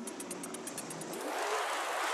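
A track playing from a vinyl record on a turntable slows and drops in pitch as the record is held back by hand. About a second in it turns into a scratchy, whooshing smear as the vinyl is dragged back and forth under the needle to cue up the first bass beat.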